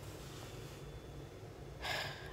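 A woman breathing between sentences: a faint breath out, then a quick, louder breath in near the end, just before she speaks again.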